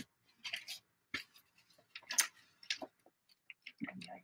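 Paper envelopes being handled and shuffled on a tabletop: a string of short, soft rustles and crinkles.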